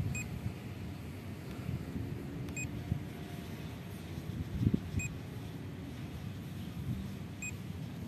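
Short high beeps repeating about every two and a half seconds from a drone's remote controller while the drone flies its return-to-home, over a low wind rumble on the microphone.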